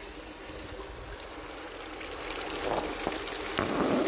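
Water jetting from a highbanker's spray bar and rushing down its aluminium sluice over the mat, running on a single 1100-gallon pump: a steady splashing rush that grows louder in the second half.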